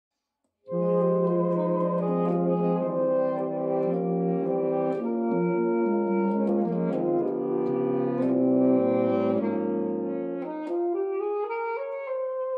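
A saxophone quartet, all four parts played by one player and layered, sounding slow, held chords that change about once a second. The music starts about a second in.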